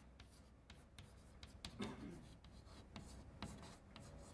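Chalk writing on a chalkboard: faint, irregular taps and scratches of the chalk as a word is written out.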